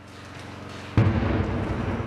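A heavy explosion about a second in, out of a rising rush of noise, followed by a deep, rolling rumble.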